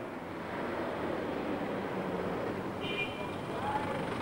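City street traffic noise, a steady hum of passing vehicles, with a brief high squeal about three seconds in.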